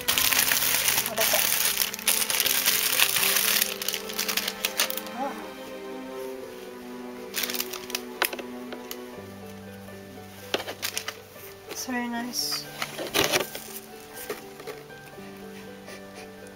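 Background music of sustained chords. Over it, plastic wrapping crinkles loudly for the first few seconds, followed by scattered clicks and handling noise.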